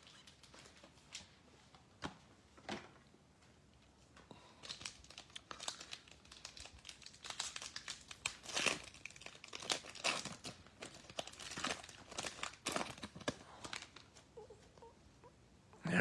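Trading-card pack wrapper being torn open and crinkled by hand: a few soft clicks, then a run of crinkling and tearing from about four seconds in until near the end.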